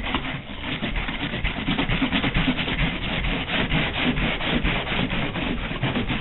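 Natural-bristle buffing brush scrubbed fast and hard over a leaded stained-glass panel coated in whiting, in quick rhythmic strokes several a second. This is the finishing buff that darkens the lead came evenly and clears the putty residue.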